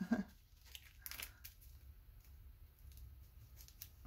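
Faint rustling and crinkling of paper craft pieces being handled and slid on a cutting mat, in short scattered crackles, a cluster about a second in and another just before the end.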